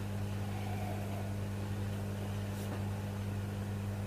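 Steady low hum with a faint even hiss behind it, unchanging throughout, with nothing else standing out.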